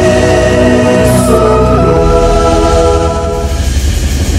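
Music with a choir singing in long held notes over a steady bass.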